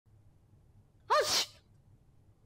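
A person sneezing once, about a second in: a short voiced intake followed by a sharp hissing burst.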